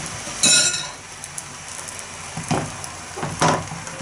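A metal spoon clinks against a glass bowl of beaten egg about half a second in, with a few more knocks later. Under the clinks there is a faint sizzle of egg cooking in a frying pan.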